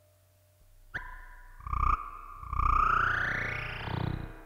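Experimental modular-synthesizer noise built from loops sampled off a modded toy robot. It is near quiet for the first second, then comes a sharp electronic blip, a short loud burst with deep bass, and a long pitch sweep that rises and then falls.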